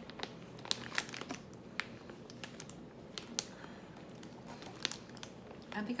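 Plastic pouch of frozen avocado chunks crinkling as it is handled, making a scatter of short, sharp crackles.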